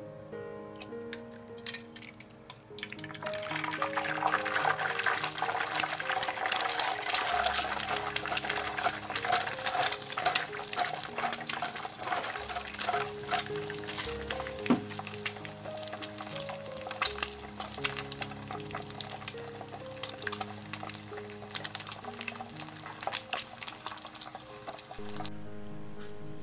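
An egg frying in hot oil in a pan, sizzling with dense crackling that starts about three seconds in and keeps on, over background music.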